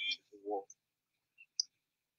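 A pause between speakers on a video call: a short spoken sound about half a second in, then near silence broken by one faint click near the end.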